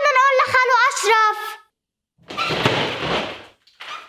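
A child's voice calling out, then after a brief silence a crash lasting over a second: the sound of the television being broken.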